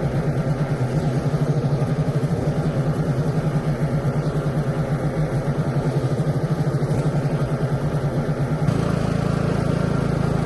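Engine of a Westwood S1300 ride-on lawn mower running steadily while the mower is driven, with a fast, even pulsing beat. Near the end the sound turns to a smoother, steadier drone.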